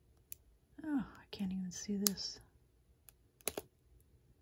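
Foil trading-card pack wrapper being peeled apart in the hands, giving a few sharp crinkling clicks near the start and about three seconds in. A voice mutters briefly in between.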